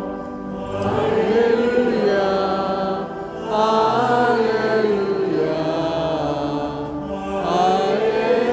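Liturgical chant sung in long, sustained phrases whose pitch rises and falls, with short breaths about three seconds in and again near the end.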